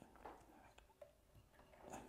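Near silence, with a few faint clicks and rubs of a studio lamp head being handled as it is taken off its light stand.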